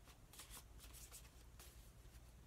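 Faint shuffling of a tarot deck by hand: a few soft papery rustles, barely above near silence.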